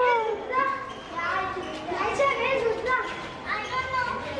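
Children's high-pitched voices talking and calling out over one another while they play.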